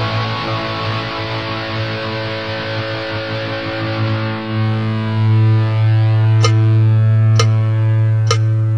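Heavy metal band instrumental: a distorted electric guitar chord held and left ringing, swelling louder about five seconds in. Near the end, sharp percussive hits come in, evenly spaced a little under a second apart.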